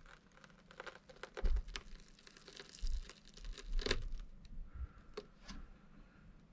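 Quiet hand-handling noises: scattered faint rustles and small clicks of fingers working a doubled fishing line under an adhesive-mounted car emblem, with a few sharper ticks.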